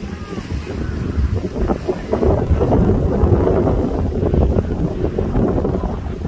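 Wind buffeting the microphone, a loud low rumble that builds toward the middle, with faint voices underneath.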